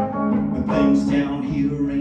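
Electric guitar played live through a small amplifier: a picked instrumental passage with notes sustaining over a low held tone.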